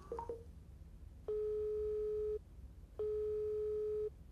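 Smartphone on speaker ringing out on an outgoing call: two long beeps of the ringback tone, each a steady single-pitch tone lasting about a second, a little over half a second apart. It is the signal that the other phone is ringing and has not yet been answered. A couple of faint short blips come just at the start.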